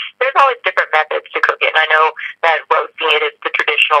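Continuous speech, a voice talking without pause, with the thin, narrow sound of a telephone line.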